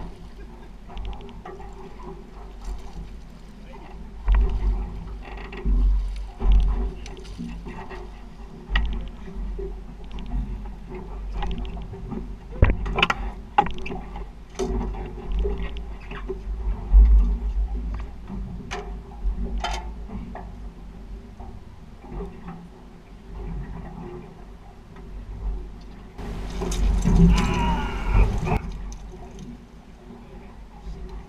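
Wind gusting on the microphone and water lapping against a small boat, with scattered clicks and knocks of fishing tackle being handled. A louder rush of noise comes about 26 seconds in and lasts a couple of seconds.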